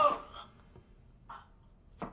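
A man's short choked gasp right at the start, followed by faint breaths about half a second and a second and a quarter in.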